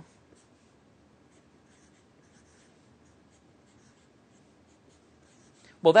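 Felt-tip marker writing on paper: faint short strokes and scratches as a line of an equation is written out.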